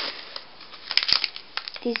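Crinkling of plastic treat bags being handled, with two sharp clicks close together about a second in.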